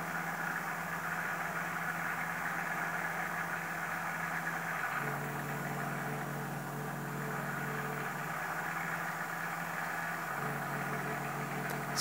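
PM-25MV benchtop milling machine running its spindle and belt drive at about 2500 RPM, a steady mechanical hum whose pitch drops slightly about five seconds in and again near the end. At this speed the spindle assembly vibrates, which the owner puts down to the spindle bearings having no axial preload.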